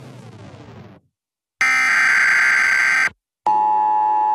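The intro of an electronic dance track. A descending synth sweep fades out about a second in. After a brief silence come two long, loud, alarm-like electronic beeps with short gaps between them, the second lower in pitch.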